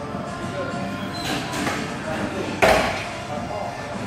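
Plate-loaded hip thrust machine setting down with one sudden loud thud about two and a half seconds in, over steady gym background music and chatter.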